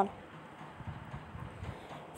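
Faint background hiss with a few soft, dull knocks around the middle.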